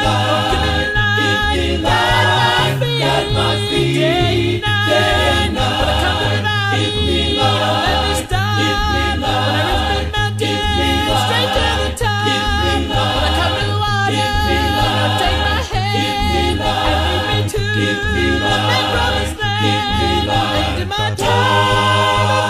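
Male a cappella gospel vocal group singing in close harmony, with no instruments, over a deep sung bass line that moves in a steady rhythm.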